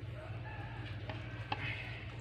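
A faint, drawn-out animal call in the first half, over a steady low hum, with a couple of soft clicks.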